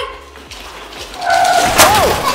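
A loud crash near the end as something is knocked into during the ride-on-car race, with a voice crying out over it.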